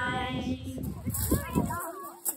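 Children's choir ending a song on a held note over a backing track, with the singing stopping about half a second in and the backing cutting off near the end. Short high children's voices follow in the second half.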